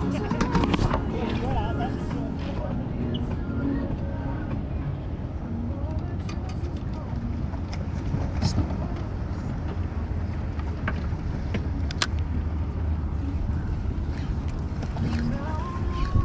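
Low, steady rumble of wind and water around a small fishing boat, broken by a few sharp clicks and knocks. Muffled voices and a laugh about halfway through.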